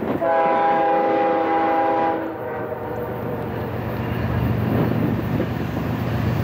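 Freight train's diesel locomotive air horn sounding one long chord of about two seconds, followed by the rumble of the approaching locomotives' diesel engines growing slowly louder.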